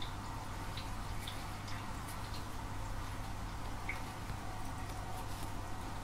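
Faint handling sounds of a metal crochet hook working thin crochet thread: a few soft, scattered ticks over quiet room noise with a steady low hum.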